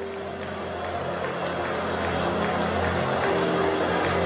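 Sustained chords of background church music under a large congregation praying aloud together, the mass of voices growing slowly louder.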